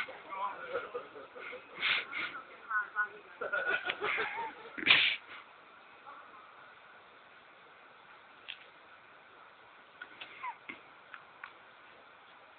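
People's voices and laughter for about five seconds, ending in a loud outburst. Then faint background hiss with a few small clicks.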